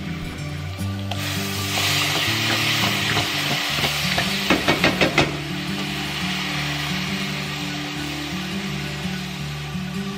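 Diced tomatoes sizzling as they are poured onto hot fried onions and spices in a pot and stirred with a wooden spatula; the sizzle is loudest a couple of seconds in. About halfway through comes a quick run of about five knocks.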